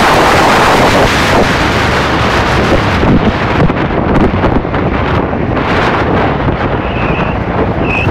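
Wind rushing over the microphone with road noise from a camera moving at road speed, loud and steady, its hiss thinning after a few seconds. Near the end come two short high squeaks about a second apart.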